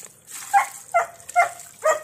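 An animal calling four times in quick succession, each call short and pitched, about half a second apart.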